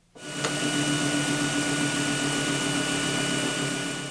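Small high-speed rotary tool drilling into a die-cast metal toy car body: a steady whine with a few fixed tones that builds up just after the start, holds, and eases off near the end.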